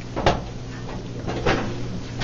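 Two short, sharp knocks, about a quarter second and a second and a half in, inside a submarine compartment, over a steady low hum.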